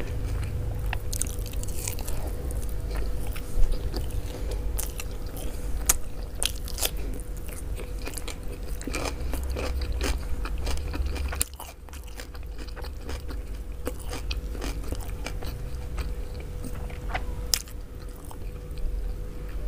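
Close-miked chewing and wet mouth clicks of a person eating mansaf (rice with jameed yogurt sauce) by hand, with a sharp click about three and a half seconds in. A faint steady hum runs underneath.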